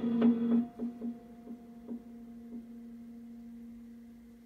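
Prepared piano: a last few quick repeated struck notes in the first half-second. The same pitch then rings on and slowly dies away, with a few faint soft taps along the way.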